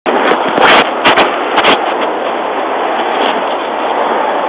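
Loud steady hiss with a cluster of sharp crackles and pops in the first two seconds and one more a little after three seconds: open-channel noise and handling crackle from a police officer's wireless body microphone feeding the dashcam.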